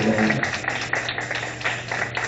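A congregation praying aloud at once: a jumble of overlapping voices with scattered sharp taps and knocks.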